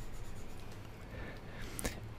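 Faint scratchy rubbing of a computer mouse being dragged across the desk to paint a brush stroke, with a faint click near the end.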